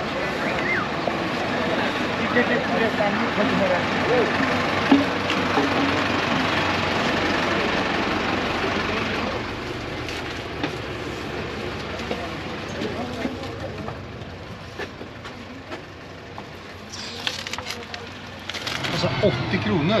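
Bus station bustle: people talking over a steady rush of crowd and vehicle noise. About nine seconds in it drops to a quieter inside-the-bus sound with scattered knocks and clicks.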